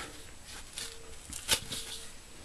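Quiet handling noises with a sharp snip about one and a half seconds in: scissors cutting a section of deer hair for fly tying.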